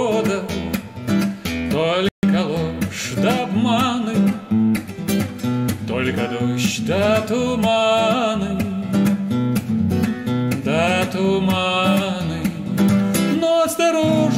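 A man sings a song while accompanying himself on a strummed acoustic guitar. The audio cuts out completely for an instant about two seconds in.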